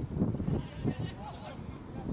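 Footballers' shouted calls to one another across the pitch, raised voices rising and falling in pitch, over low rumbling that is strongest in the first second.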